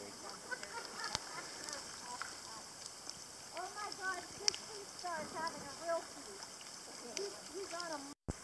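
Faint human voices: a few quick runs of short, arching syllables over a low, steady background hiss, with a few small clicks.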